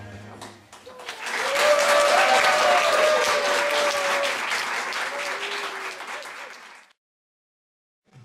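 Song music fading out, then an audience clapping with a few voices calling out, dying away and cutting off abruptly about a second before the end.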